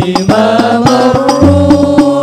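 Amplified male voices singing sholawat, a devotional Arabic song in praise of the Prophet, in long drawn-out melodic lines over a steady, evenly spaced percussion beat.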